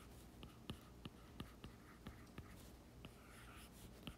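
Faint, irregular taps and ticks of a stylus on an iPad's glass screen as circles and a word are handwritten.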